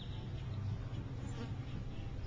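Flies buzzing in a steady low drone.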